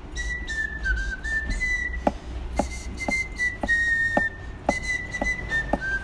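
A person whistling a short tune, a run of held notes that step up and down in pitch, with light taps about twice a second in the second half.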